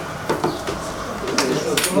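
Low, indistinct voices of people talking in a small meeting room, with two short sharp clicks about a second and a half in.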